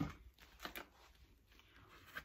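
Faint handling noise: a soft bump right at the start and a brief rustle a little under a second in, then near silence.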